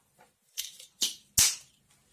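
The plastic flip-top lid of a test-strip tube being snapped shut: three sharp clicks, about half a second apart, starting about half a second in, the last one the loudest.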